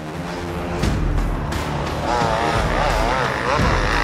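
Enduro dirt bike engine revving under race load, its pitch rising and falling repeatedly with the throttle in the second half, over background music.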